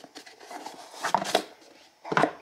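Hand-handling noise as a small item is lifted out of a cardboard box: light rustles and soft clicks, with two sharper knocks close together a little after a second in.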